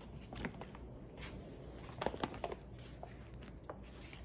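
Plastic rice bag crinkling and crackling as hands pick and pull at its stitched top to open it. Scattered short, sharp crackles, with a cluster about two seconds in.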